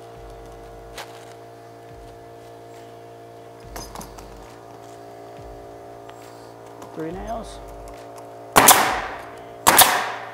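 Pneumatic coil roofing nailer firing two nails into asphalt shingles: two sharp shots about a second apart near the end, over a steady hum.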